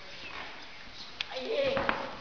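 Muay Thai clinch sparring: sharp knocks and slaps of bodies and knees meeting and feet on the ring floor, bunched in the second half, with a short vocal shout or grunt about one and a half seconds in.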